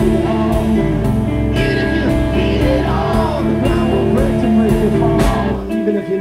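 Live rock band playing electric guitars, bass and drums with a male lead vocal. The drums keep a steady beat of about two hits a second, and the band thins out briefly near the end.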